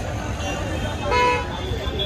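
A vehicle horn honks once, for about half a second, about a second in, over steady street traffic noise.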